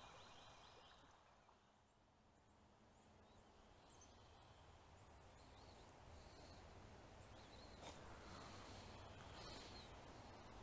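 Near silence: faint outdoor ambience with a few faint, high, short bird chirps.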